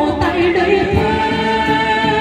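Cantonese opera singing with instrumental accompaniment, amplified through a portable speaker, with a long held note in the second half.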